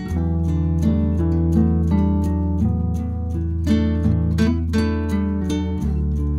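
Background instrumental music: a quick, steady run of picked, guitar-like notes over a low held bass note that shifts near the end.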